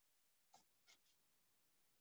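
Near silence, with a few very faint ticks about half a second to a second in.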